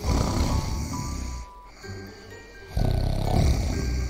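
A person snoring loudly, two long rasping snores, the first at the start and the second from near the three-second mark, over soft background music.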